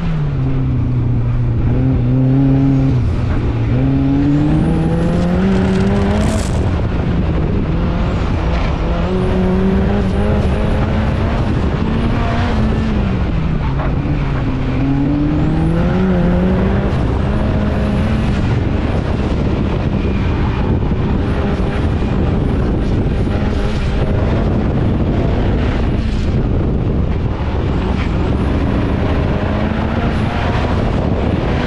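Mazda RX-8 with a turbocharged 2.3-litre Duratec four-cylinder, heard from inside the car during an autocross run. The engine note climbs and drops again and again as the car accelerates and slows between cones.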